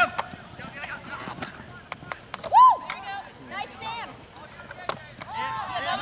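Players' voices calling out across an open field, faint and overlapping, with one loud short shout about two and a half seconds in and more calls near the end. A few faint clicks are scattered through.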